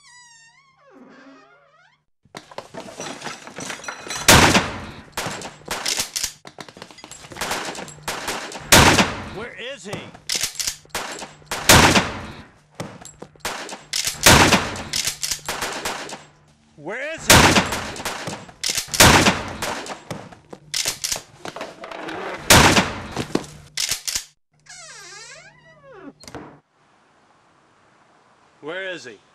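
A long, irregular run of loud sharp bangs and knocks, several a second, with the heaviest about every two to three seconds. A wavering, wailing tone rises and falls before the bangs start and again after they stop.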